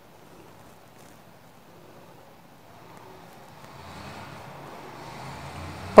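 Faint rustling of cloth being handled and positioned at a sewing machine, growing a little louder in the last couple of seconds.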